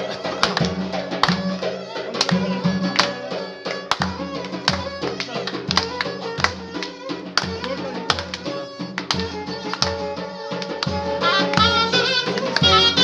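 Live Turkish folk music: a large davul bass drum beating a steady rhythm under a reed instrument's winding melody.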